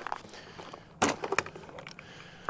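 Waterproof Plano plastic tackle box being set down on a kayak hull and unlatched: a sharp knock about a second in, followed by a few quick plastic clicks as the lid is opened.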